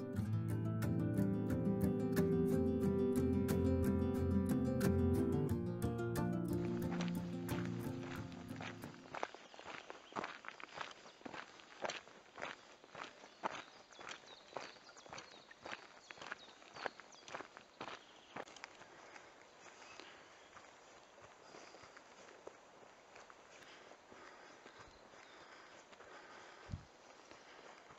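Background music fades out over the first several seconds, leaving a walker's footsteps on a gravel track: steady, a little under two steps a second, growing fainter toward the end.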